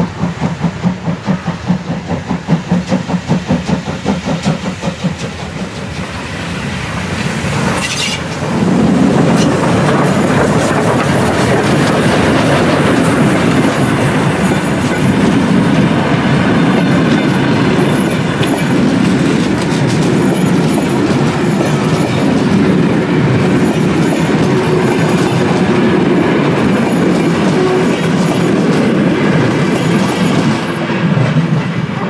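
Steam locomotive approaching with a passenger train, its exhaust beats coming in a steady quick rhythm. About eight seconds in it passes close, and the coaches roll by loud and steady, wheels clattering over the rail joints.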